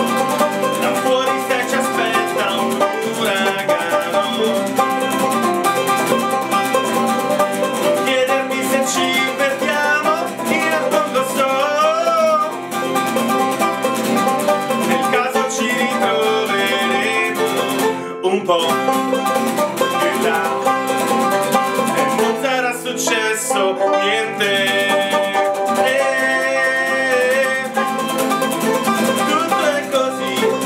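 Acoustic guitar strumming and banjo picking together, with a man singing over them.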